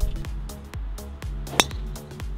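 Background electronic music with a steady beat. About one and a half seconds in, a single sharp ping of a golf driver striking the ball off the tee cuts through it.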